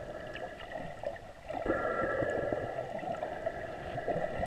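Underwater sound picked up by a snorkeller's camera: water moving and gurgling around it, with a steady hum underneath that grows louder about a second and a half in.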